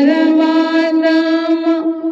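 A woman's solo voice singing a devotional folk song: one long held note, rising slightly as it begins and breaking off just before the end.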